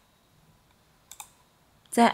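Two quick computer mouse clicks about a second in, against near silence.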